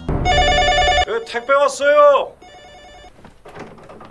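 Electronic telephone ringing with a trilling tone: one ring of about a second, then a shorter, quieter ring about two and a half seconds in, with a brief spoken phrase between them.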